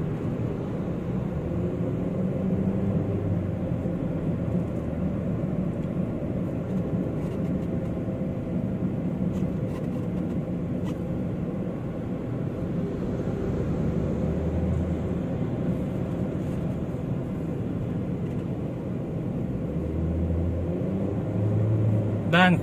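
Steady road noise heard from inside a moving car: a low engine and tyre rumble at cruising speed.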